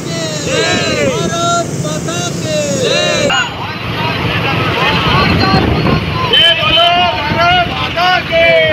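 Loud raised voices, calling or singing in rising and falling phrases, over the steady running of many motorcycle and scooter engines. The sound changes abruptly about three seconds in.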